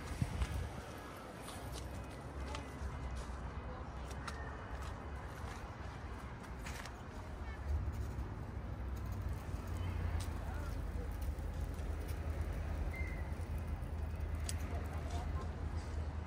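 Outdoor ambience with a low wind rumble on the microphone, heavier from about eight seconds in, and a few scattered light clicks.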